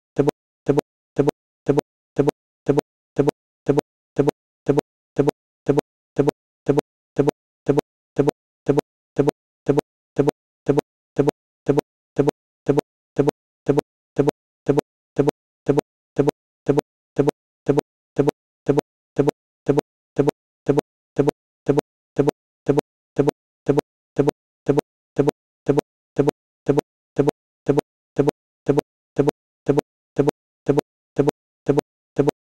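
A short buzzing blip repeating evenly about twice a second with silence between: a stuck audio loop from a playback glitch, the picture frozen on one frame.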